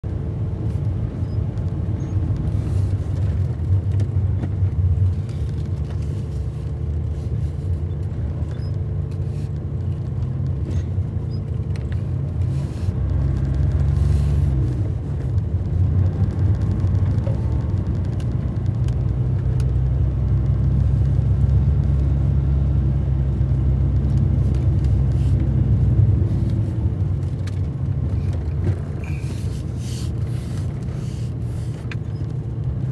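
Car driving on a snow-covered road: a steady low rumble of engine and tyres, the engine note rising and falling briefly about halfway through.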